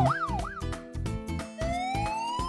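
Cartoon emergency-vehicle siren: a fast up-and-down yelp, about three sweeps a second, that stops a moment in. After a short gap, a slow rising wail starts near the end, over light background music.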